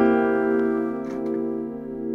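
A C dominant seventh chord (B-flat, C, E, G) struck once on a piano keyboard and left ringing, slowly fading.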